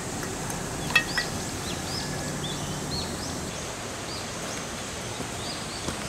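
A small bird chirping: a string of short, high, arched notes repeated from about a second in, over a faint steady high-pitched tone and a low background hiss. A sharp click about a second in comes from edamame pods being handled in a metal bowl.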